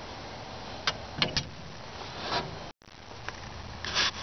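A few light clicks and taps of handling in a home workshop over a steady background hiss, with a brief total break in the sound a little after halfway.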